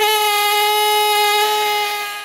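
Pneumatic fossil-preparation air scribe (ZOIC PalaeoTech Trilobite) running with its diffuser O-ring removed for more power, giving a loud, steady, high-pitched buzz that starts abruptly.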